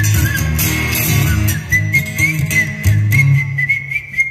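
Acoustic guitar playing an instrumental break with no singing, its low notes ringing, while a thin high whistling tone with small pitch bends sits above it.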